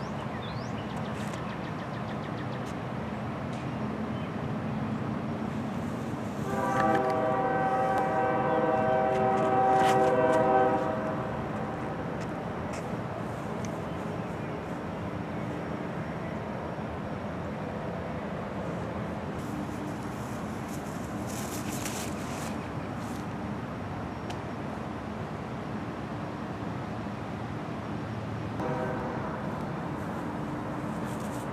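A train horn sounds one long chord blast about six seconds in, lasting about four seconds and getting louder near its end. A shorter blast follows just before the end.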